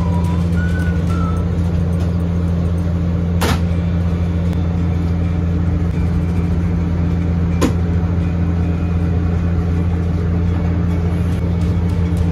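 Steady, loud low machine hum, with two sharp clicks about three and a half and seven and a half seconds in.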